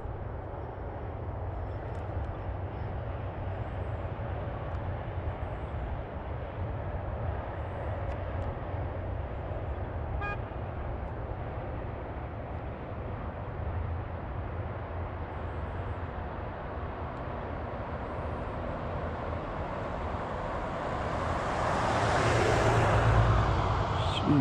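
Steady low outdoor rumble, then a pickup truck passes close by near the end, its road noise swelling and fading as it goes.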